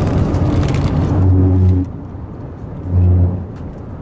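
Road noise inside a moving car's cabin. A louder rushing noise fills roughly the first two seconds, and two short low hums come about a second and three seconds in.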